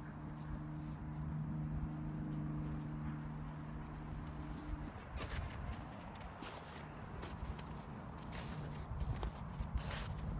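A steady low hum for about the first five seconds, then irregular crunching steps in snow near the microphone through the second half.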